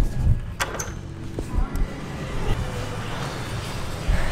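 Road traffic noise from a street, with a sharp knock about half a second in and a few smaller clicks.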